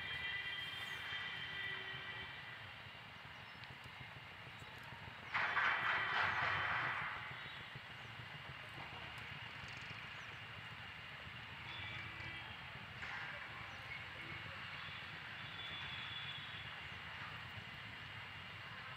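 Outdoor background noise with a steady low rumble and faint high tones. About five seconds in comes a sudden loud, noisy rush that fades over about two seconds.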